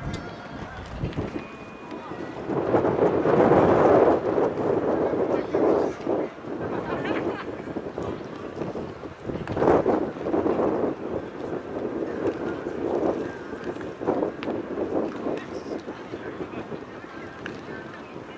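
Indistinct voices of several people talking, with wind noise on the microphone; the voices are loudest about three to four seconds in and again around ten seconds in.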